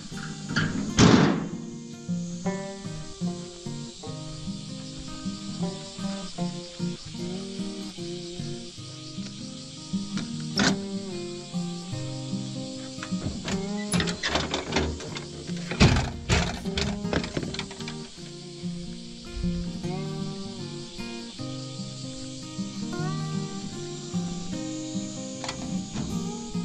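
Background music with a melody of held notes, over which a few sharp knocks are heard: a loud one about a second in, one near the middle, and a cluster of them a little past halfway.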